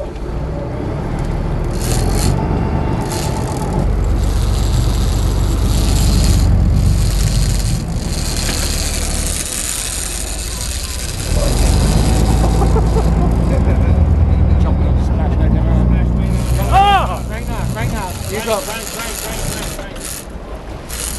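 Low rumble of a sportfishing boat's engines with wind on the microphone, dropping back for a second or two about halfway through. There are indistinct voices and a short high rising-and-falling call about three-quarters of the way in.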